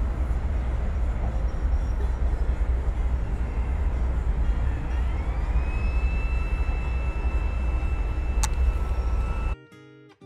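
Steady outdoor background rumble and hiss, heaviest in the low bass, with a thin whistle-like tone that slides up about halfway through and then holds. It cuts off abruptly just before the end, giving way to strummed acoustic guitar music.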